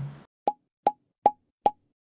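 Four short pops, each with a brief pitched ping, evenly spaced about 0.4 s apart over dead silence: an edited-in sound effect, like a countdown before a start.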